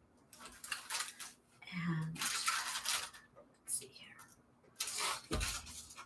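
Paper rustling and shuffling in several short bursts as a pile of stitched paper envelopes is handled and gathered into a stack, with a soft thump about five seconds in.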